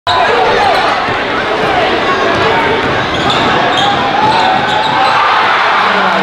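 Game sound in a crowded gymnasium: a loud, steady din of shouting voices, with a basketball bouncing on the hardwood court.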